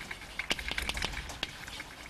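Chalk writing on a blackboard: a quick, irregular run of light taps and scratches.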